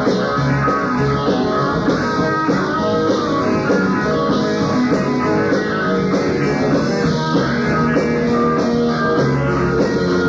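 Rock band playing live, with electric guitar to the fore over bass guitar and drums, heard in an audience recording of the show. The music runs on steadily without a break.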